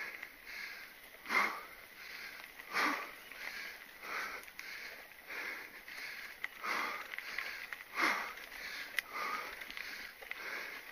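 Mountain biker breathing hard and rhythmically while pedalling, about one breath every second with a few heavier breaths among them. A single sharp click sounds near the end.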